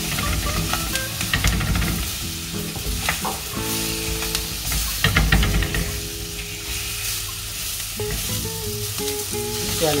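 Apple slices sizzling as they fry in oil in a clay cooking pot, with a spoon stirring and scraping against the pot now and then.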